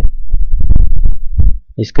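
Loud low-pitched rumble and thumping on the microphone for about a second and a half, then a man's voice resumes near the end.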